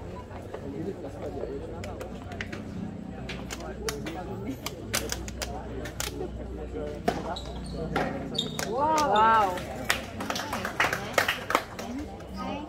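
Tennis ball being struck by rackets and bouncing on a hard court: a run of sharp pops through the second half. Spectators talk throughout, and a voice calls out in a long rising-and-falling cry about three-quarters of the way through.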